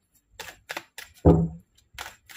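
A deck of tarot cards being shuffled by hand: a run of quick card clicks, with one louder dull thump a little past halfway.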